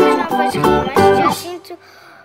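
Music for a children's song: an acoustic guitar strummed in quick, even strokes, about three a second, stopping about one and a half seconds in.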